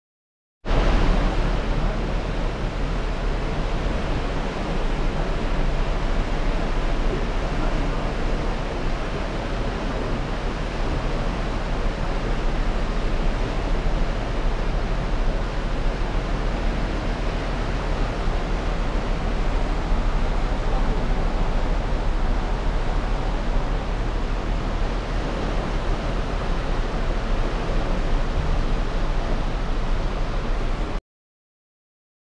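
Steady rushing of water churned up by a cruise ship's thrusters as the ship pulls away from its pier, with a deep rumble underneath. It starts abruptly about half a second in.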